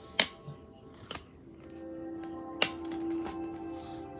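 Sharp plastic clicks from a DVD being handled in its case, three of them, the loudest about two and a half seconds in. From about a second and a half in, a steady held musical tone sounds beneath them.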